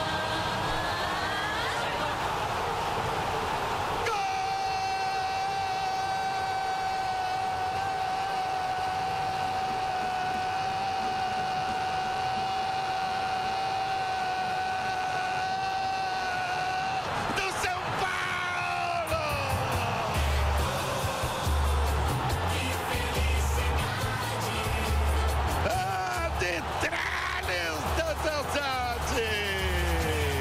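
A sports radio narrator's goal shout: a long drawn-out "gol" held on one note for about thirteen seconds, then breaking into falling, sliding cries. Music with a steady beat comes in under the voice about two-thirds of the way through.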